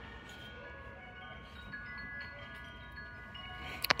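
Wind chimes ringing faintly, several sustained tones at different pitches overlapping and fading.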